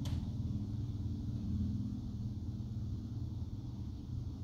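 Steady low background rumble, with a short click at the very start.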